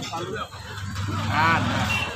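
Roadside market background: people talking and a vehicle engine running, with a louder call or voice in the second half.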